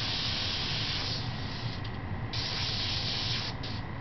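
Airbrush spraying paint with a steady hiss, the trigger let off briefly about halfway through and again near the end.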